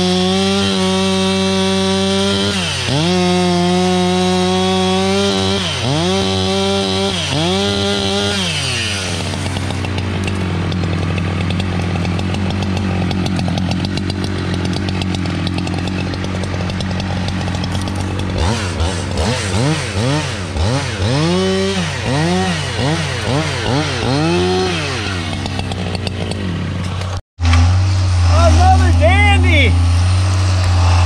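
Husqvarna chainsaw cutting through felled logs, running at high revs with its pitch repeatedly sagging and climbing back, about once a second, as it is throttled and loaded in the cut. Near the end the sound breaks off abruptly and a deeper, louder engine sound with a rising whine takes over.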